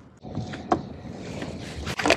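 Water splashing and sloshing beside a boat hull as a hooked bass is brought to the boat and lifted out, with a sharp click just under a second in and another near the end.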